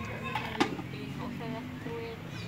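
Faint background voices with one sharp click a little over half a second in.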